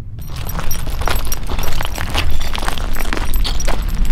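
Wind buffeting the camera microphone in a steady low rumble, with a rapid, irregular crackling over it.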